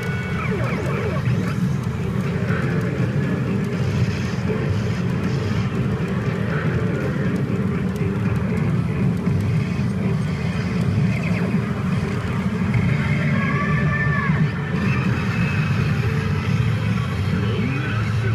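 Loud, steady din of a pachinko parlor: the CR Lupin the Third pachinko machine's music and electronic sound effects over the continuous noise of the surrounding machines.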